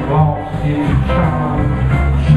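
Live electric blues band playing: two electric guitars over electric bass and a drum kit, with the guitar lines bending in pitch over a steady low bass.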